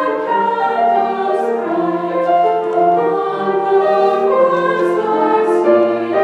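Mixed-voice choir singing a slow carol in several-part harmony, with long held notes.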